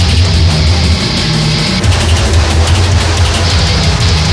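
Loud electronic grindcore music: very fast programmed drum hits over heavy distorted low guitar and bass. The low end drops out briefly about a second in and comes back just before the two-second mark.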